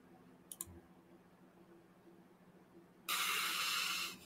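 Two faint quick computer-mouse clicks about half a second in, then near the end a sudden steady hiss lasting about a second.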